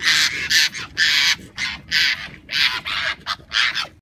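Arctic foxes screaming at each other in a fight: a rapid string of short, harsh calls, about two a second.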